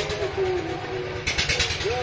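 Outdoor sound of a marching protest crowd: distant voices, with a short stretch of rapid rustling or clattering noise from a little past the middle.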